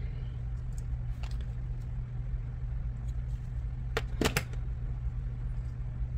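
Paper die-cut pieces being handled and pressed onto a card by hand: light rustles and faint clicks, with two sharper ticks about four seconds in, over a steady low hum.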